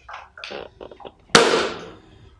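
A few short, quieter noises, then a loud sudden bang about a second and a half in that dies away over half a second.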